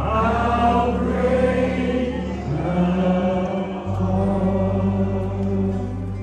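Worship team singing a slow song: voices hold long notes over steady low accompaniment, and the bass note shifts about four seconds in.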